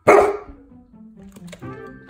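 A golden retriever gives one short, loud bark, begging for a treat.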